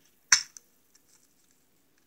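A single sharp plastic click about a third of a second in as a toy ladder is pressed into the turret of a plastic toy fire truck, followed by one or two faint ticks.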